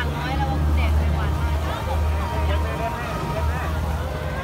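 Crowd of people chattering in the open, many voices overlapping, over a steady low rumble.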